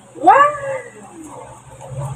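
A single high, meow-like cry, rising then falling in pitch over about half a second, shortly after the start; then quieter sounds.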